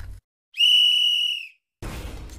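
A single high, steady whistle-like electronic tone lasting about a second, a sound effect of an animated end-screen intro. A short noisy swish starts near the end.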